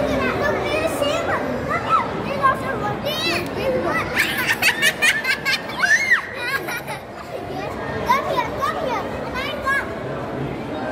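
Young children's high, excited voices and squeals over the steady hubbub of a crowd, with the busiest run of shrieks about four to six seconds in.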